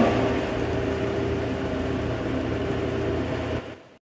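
Karaoke backing track's last held chord over a steady low drone, fading out near the end as the recording stops.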